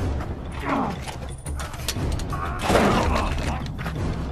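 Mechanical clattering and creaking over a steady low hum, with sharp knocks and creaking sweeps about a second in and again near three seconds.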